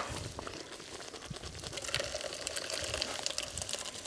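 Thick curry being poured from an iron kadai into a steel vessel: a soft, wet, sliding pour with many small clicks and crackles.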